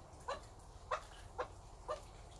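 A hen grumbling: four short clucks, about half a second apart.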